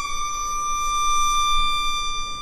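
Violin holding one high note: its vibrato stops and the tone holds steady, starting to fade near the end.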